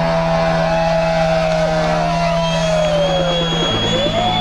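Live rock band holding a sustained, distorted electric-guitar note that slowly bends downward over a held bass note. The bass drops lower about three-quarters of the way through, and a thin high tone joins about halfway in.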